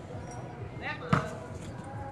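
A volleyball struck by a hand: one sharp slap a little over a second in, with a short shout just before it.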